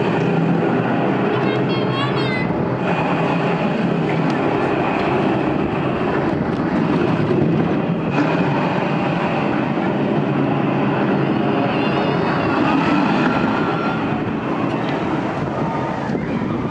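Roller coaster train running along the tubular steel track of an ABC Rides tube coaster, a steady rumble that eases off slightly near the end.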